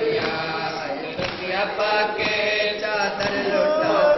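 Two male reciters chanting a noha, a Shia mourning lament, into a microphone in long, sustained melodic lines.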